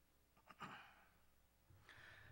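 Near silence broken by a man's soft breathing: a faint click and a short breath about half a second in, then another breath near the end, just before he speaks again.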